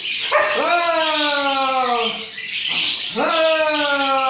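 A dog howling: two long drawn-out calls, each rising sharply at the start and then sliding slowly down in pitch, with a short gap between them.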